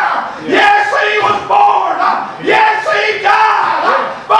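A man preaching in a loud, sing-song chanted delivery, holding a note on each phrase, with short breaks between phrases about once a second.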